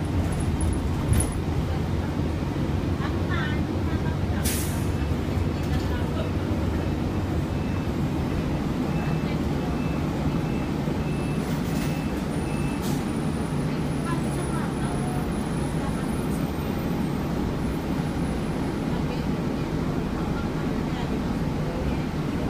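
City bus interior while under way: steady engine and road noise, with a short hiss of air about four and a half seconds in and fainter hisses around twelve seconds, typical of the bus's air brakes.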